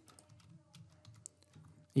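Faint computer keyboard typing, a quick run of light key clicks, as a search term is typed into a web form.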